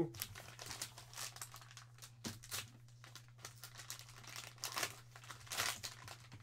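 Plastic-and-foil card pouch crinkling as hands pull it open, a string of irregular crackles with the loudest ones near the end.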